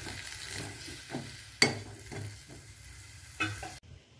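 Metal ladle stirring drumstick pods in masala in a metal pot, scraping and knocking against the pot's side over a faint sizzle. One sharp clank of ladle on pot about one and a half seconds in.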